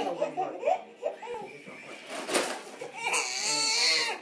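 Baby laughing and squealing, building to a loud, high-pitched squeal near the end.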